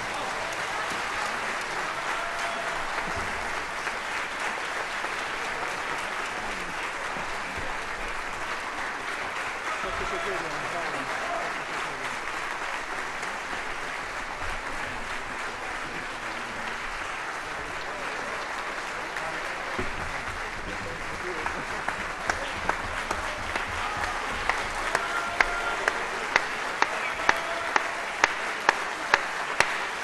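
Concert-hall audience applauding. The applause is dense and steady at first, then from about two-thirds of the way in it turns into rhythmic clapping in unison, at about three claps every two seconds and growing stronger.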